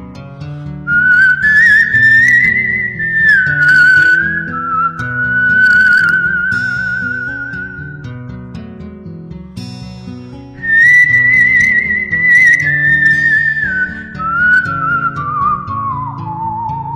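Whistled melody with vibrato over a soft instrumental accompaniment of low chords, from a whistling medley. It comes in two phrases, each starting high and stepping down in pitch. The first begins about a second in, the second about ten seconds in.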